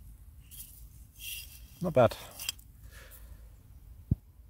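A gloved hand rubbing and scraping soil off a dug-up glass bottle: two short scrapes in the first second and a half, before a brief spoken remark.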